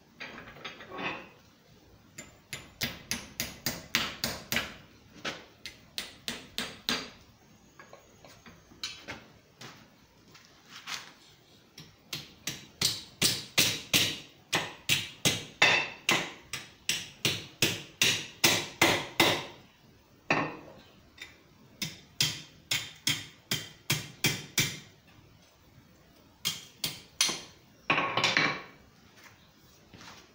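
Small hand hammer striking thin 18-gauge sheet steel on an anvil, bending the tabs of a split scarf. Sharp blows come about three or four a second in several runs of a few seconds each, with short pauses between them.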